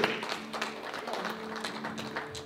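Soft, sustained keyboard chords held steady under the pause in preaching, with a few scattered claps and taps from the congregation.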